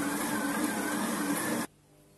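Electric stand mixer running with a whine as its dough hook kneads whole-wheat semolina bread dough, then cutting off abruptly near the end.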